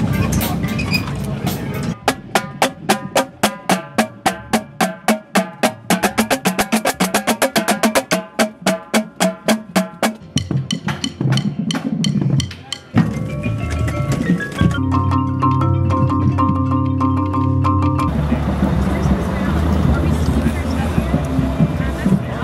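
Indoor percussion ensemble playing: after a couple of seconds, a run of quick, evenly spaced mallet strokes lasts about eight seconds. Scattered hits follow, then held pitched chords for a few seconds.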